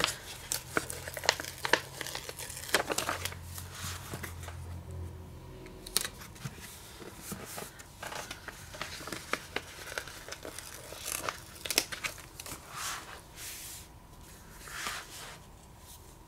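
Paper stickers being peeled from their backing sheets and pressed onto journal pages, with the sheets crinkling and rustling. Short scratchy rustles and light taps come one after another.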